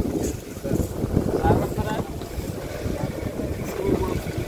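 Wind buffeting the microphone outdoors, an uneven low rumble, with faint voices in the background.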